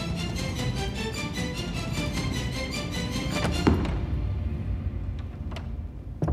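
Dramatic background music with a fast pulsing rhythm that ends on one heavy low hit about two-thirds of the way through. After the hit the music drops to quieter held tones, with a few light taps.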